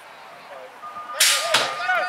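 BMX start-gate sequence: a steady electronic tone starts just under a second in and holds, with a short loud hiss and a sharp clack around the middle as the start gate drops, and voices over it.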